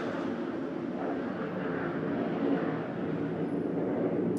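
A steady rumble of passing vehicle noise.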